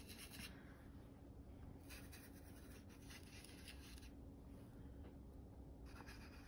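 Faint rubbing of a small angled brush scrubbing paint on saturated watercolor paper, coming in a few short strokes over a low steady hum.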